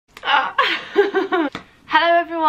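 A young woman laughing in a few short bursts, lasting about a second and a half.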